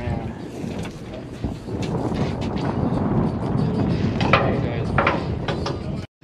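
Low rumbling noise with scattered knocks and rustles as a body-worn action camera is bumped against clothing.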